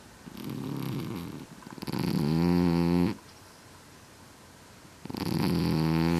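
Scottish Fold cat snoring loudly in its sleep: three snoring breaths, a softer one first, then two loud ones of about a second each, with quiet pauses between.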